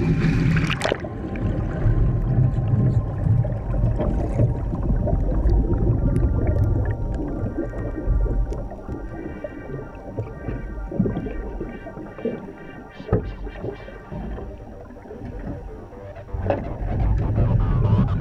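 Water rushing and bubbling, heard muffled from underwater, as a helicopter underwater escape trainer rolls over and floods, with a splash about a second in and a heavy low rumble that eases off in the middle and builds again near the end. Music plays underneath.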